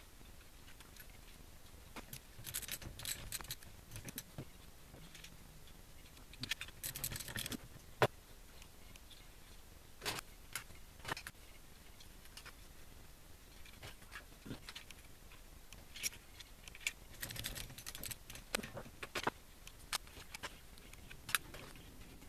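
Small metal hardware on a bank of LiFePO4 cells, such as bus bars and terminal parts, clinking and rattling in short clusters, with scattered sharp clicks, as the connections are handled.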